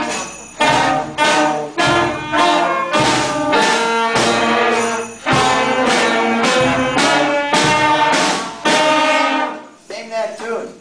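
A student concert band of clarinets, flutes, saxophones and brass playing a passage of short, accented chords together. The band cuts off about nine and a half seconds in.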